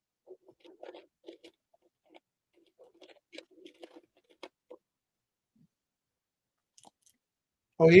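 Faint, irregular soft clicks and crunches over the first five seconds or so, then a man's voice briefly right at the end.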